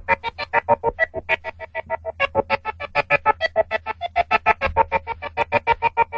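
Hard tekno breakdown: a rapid, even run of short, pitched synth notes, about seven or eight a second, with no kick drum or heavy bass under it.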